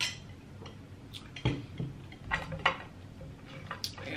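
Crab-leg shell cracking and snapping as it is broken apart by hand: several short, sharp cracks and clicks.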